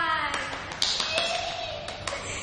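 A few sharp, irregular hand claps, about five in two seconds, with brief voice sounds between them.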